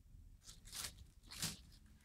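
Three faint, brief rustles as a bare-root walnut sapling is set down on a pile of soil, plastic wrapping and mesh netting.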